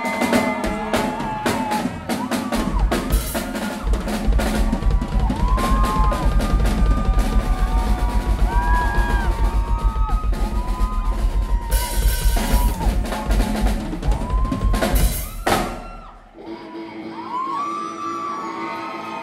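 Live rock band playing loud, with a busy drum kit and heavy bass drum under electric guitar and bass. The full band cuts off abruptly about fifteen seconds in, leaving quieter held notes.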